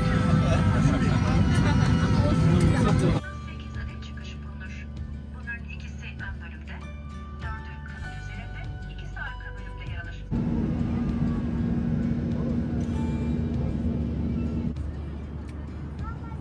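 Airliner cabin noise on the ground: a steady low hum of the aircraft that drops off abruptly about three seconds in and comes back loud about ten seconds in, as the clips change.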